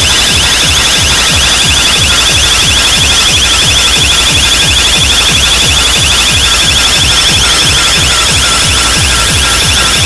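Very loud DJ dance music from a street sound system: a fast, repeating alarm-like high synth line over a fast steady bass beat.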